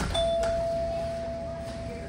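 A single chime rings once: one clear tone that sets in just after the start and fades slowly over about two and a half seconds.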